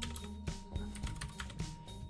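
A few light clicks of computer keyboard keys as a short command is typed and entered.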